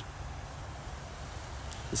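Steady low rumble of outdoor background noise, with a faint click near the end.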